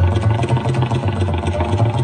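Tabla played in a fast, unbroken stream of strokes, the bayan's low bass holding steadily under the rapid dayan strokes. A sarangi holds a sustained melodic line behind.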